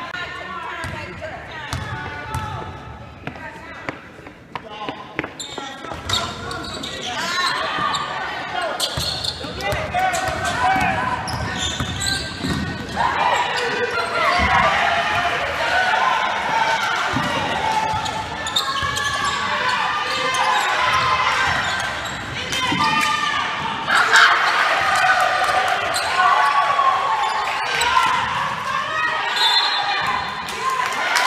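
A basketball bouncing on a hardwood gym floor during live play, with repeated sharp impacts, among unintelligible shouts and calls from players and spectators that echo around the gym.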